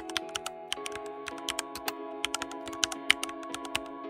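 Computer keyboard typing sound effect: quick, irregular key clicks over soft sustained background music.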